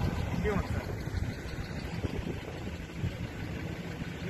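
A pickup truck driving past close by, its engine and tyres heard as a low, steady rumble.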